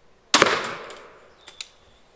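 A Zubin X340 compound crossbow with a 190-pound draw is fired, loaded with a shot shell of lead pellets. The string releases with a loud, sharp crack that rings briefly and fades, and a couple of faint clicks follow about a second later.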